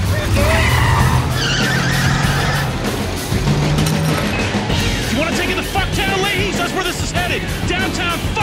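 A car being driven hard with tyres skidding, under soundtrack music.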